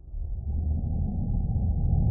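A deep, steady rumble that swells in suddenly and builds over the first half-second, then holds.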